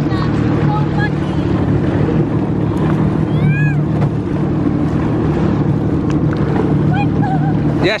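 Jet ski (WaveRunner) engine idling with a steady, even hum; no revving.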